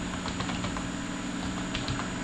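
Typing on a computer keyboard: a string of light, irregular key clicks over a steady low hum.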